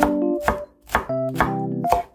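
Broad-bladed kitchen knife chopping large green onion on a wooden cutting board, about five chops at roughly two a second, over electric piano background music.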